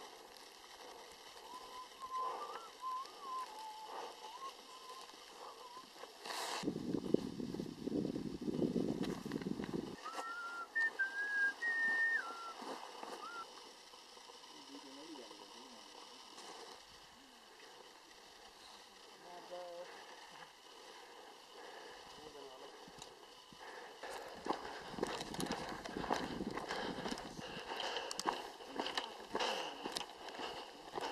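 Outdoor ambience: a few seconds of wind buffeting the microphone, faint distant voices, and crunching footsteps on stony ground near the end.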